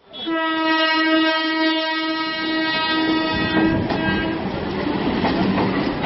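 A train horn sounds one long steady blast that fades out after about four seconds, followed by the noise of the train running along the track.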